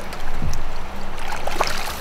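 Water splashing beside a kayak as a hooked smallmouth bass is lifted out of the river by hand, with a low thump about half a second in.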